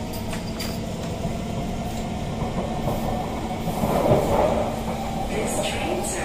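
SMRT C151 train in motion heard from inside the carriage: steady traction-motor whine over rail rumble, with a brief louder rumble about four seconds in.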